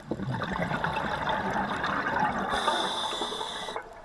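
A scuba diver's exhalation through the regulator: a loud rush of bubbles that starts abruptly and runs for nearly four seconds, with a higher hiss joining for about a second near the end.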